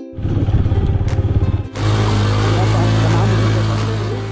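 Motorcycle engine running, uneven and pulsing for the first second and a half, then settling into a steady low drone that fades toward the end.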